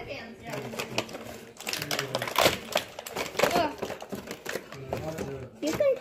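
Handling noise: a quick run of clicks and rattles as small objects are handled, densest in the first half, with bits of a voice.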